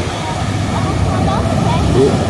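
Surf breaking on a sandy beach: a steady rushing noise with a heavy low rumble, over the faint chatter of people nearby.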